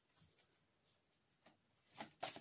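Near silence: room tone, with one faint tap about one and a half seconds in.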